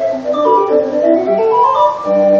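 A 20-note hand-cranked street organ (busker or monkey organ) being turned, playing a tune from its music roll: a quick stream of organ-pipe notes with a stepwise rising run in the second half.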